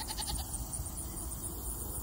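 The faint end of a Nigerian Dwarf goat's bleat in the first moment, then low rumble on the microphone, with insects chirping steadily in a fast, even rhythm high above it.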